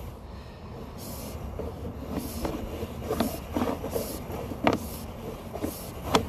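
Sewer inspection camera's push cable being pulled back out of the line, a steady low rumble with several sharp clacks and knocks as it moves.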